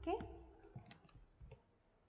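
Faint clicks of a computer mouse: a quick pair about a second in, then one more click half a second later.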